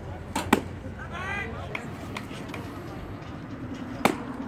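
A pitched baseball smacking into a catcher's leather mitt, a sharp pop about half a second in. About a second later comes a short shouted call over steady crowd chatter.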